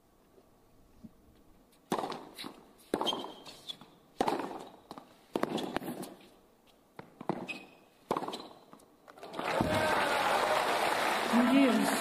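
Tennis rally on a hard court: racket strikes on the ball about once a second, each a sharp crack with a short echo. About nine and a half seconds in, the crowd breaks into applause and cheering.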